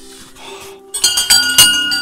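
Metal temple bell rung by hand, struck about four times in quick succession from about halfway through, each strike ringing on with clear high tones.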